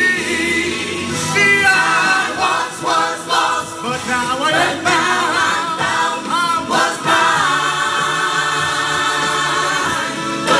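Gospel choir of men and women singing together into microphones, voices sliding and bending through the phrases, then settling into a long held chord for the last few seconds.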